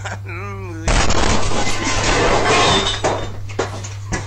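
Aerosol can exploding in a lit wood stove: a sudden loud bang about a second in, followed by about two seconds of loud, noisy blast and debris before it dies down.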